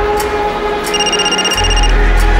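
A mobile phone ringing: a steady high electronic ring tone that starts just under a second in and lasts about a second, over a dark background music score.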